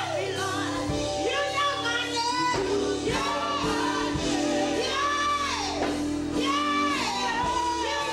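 Live gospel singing: a woman leads into a microphone with group voices behind her, over steady low instrumental accompaniment, her voice sliding and bending in pitch.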